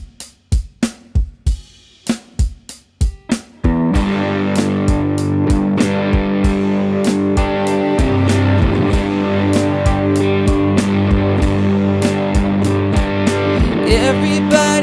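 Instrumental intro of a looped electric-guitar song: a sparse programmed drum beat plays alone, then about four seconds in sustained electric guitar chords with a low bass layer come in over it while the beat carries on.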